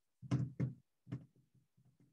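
Three short knocks close to the microphone: two in quick succession about a third of a second in, then a softer one just after a second.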